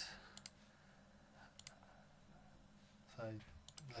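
Computer mouse clicking: three pairs of sharp clicks spread across a near-silent room.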